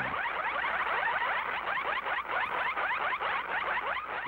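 Sci-fi ray-gun sound effect from an old film soundtrack: a steady, rapid string of short rising electronic chirps.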